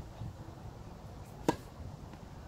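A tennis ball struck by a racket: one sharp pop about one and a half seconds in.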